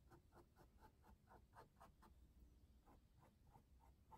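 Faint, quick short sweeps of a small paintbrush across a canvas, about four strokes a second, laying on white fur strokes.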